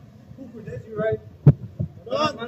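A sharp thump of a football being kicked about one and a half seconds in, with a weaker knock just after, and a player's shout just before it.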